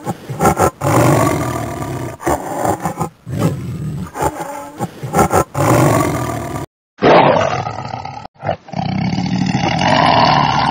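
Tiger roaring and growling: several long roars one after another, broken by a short gap of silence just before seven seconds in.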